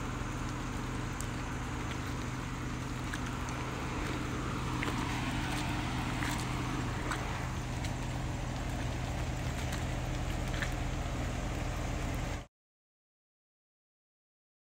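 A steady low engine hum, as of an engine idling, with a few faint ticks; it cuts off suddenly near the end.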